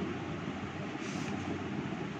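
Steady background hiss of room noise, even and unchanging.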